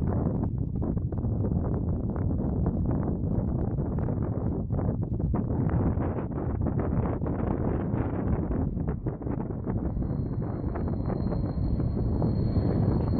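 Wind buffeting the microphone in irregular gusts. Near the end a faint, steady high whine sets in: the approaching C-160 Transall's twin turboprop engines.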